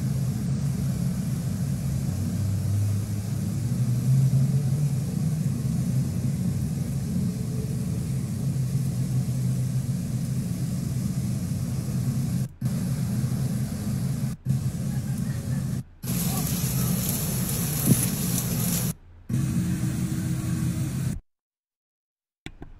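Heavy rain and rushing floodwater, a steady loud roar, with a car pushing through the flooded street. The sound drops out briefly several times in the second half and stops about a second before the end.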